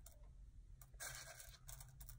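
Faint rustling and light clicking of small rhinestone flatbacks being picked through by hand in a container, a little more active from about a second in.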